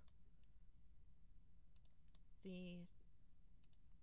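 A few faint, scattered computer mouse clicks over near-silent room tone, made while placing copied blocks in a CAD drawing. A short voiced sound, like a brief 'um', comes about two and a half seconds in.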